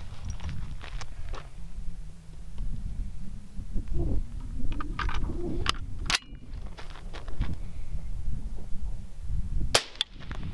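Rifle handling clicks and knocks, then near the end a single sharp suppressed shot from a .224 Valkyrie AR-15 fitted with an AMTAC Mantis-E .30-cal suppressor, taken at the shooter's ear and metered at 130.2 dB peak.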